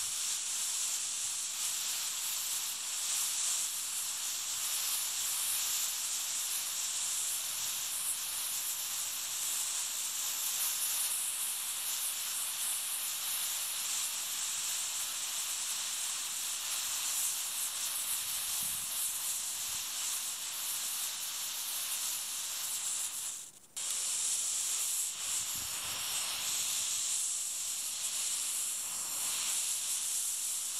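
A cast potassium nitrate–sugar smoke composition (55/45 by weight) burning with a steady, high hiss, briefly dropping out about three-quarters of the way through.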